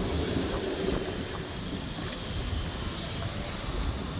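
Steady outdoor rumble of road traffic mixed with wind buffeting the phone's microphone.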